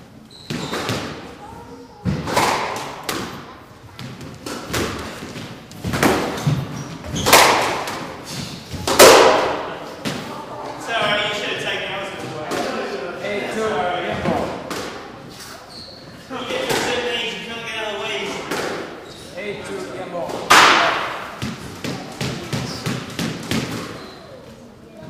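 Squash ball hits off rackets and the court walls, sharp cracks about a second apart over the first nine seconds, each ringing in the enclosed court. Voices follow, then one more loud hit near the end.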